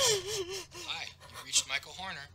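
A woman crying: a sudden gasping sob at the start, its pitch wavering and falling, followed by shorter broken sobs.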